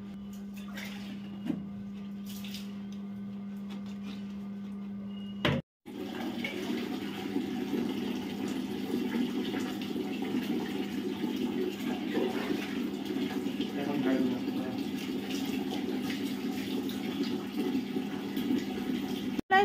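Water poured from a steel mug splashing steadily over a wet Labrador's coat and onto the tiled floor during its bath. Before that, for about the first five seconds, only a steady low hum, which cuts off abruptly.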